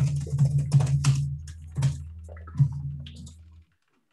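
Computer keyboard typing, a quick run of irregular key clicks over a steady low hum. It cuts off suddenly a little before the end.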